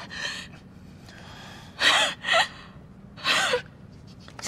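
A distressed woman gasping and sobbing: a few sharp, breathy gasps, two of them close together about two seconds in, some breaking into a brief whimper of voice.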